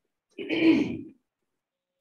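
A woman clearing her throat once, a short burst of under a second.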